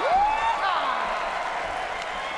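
Audience applauding and cheering, with a few rising whoops in the first second.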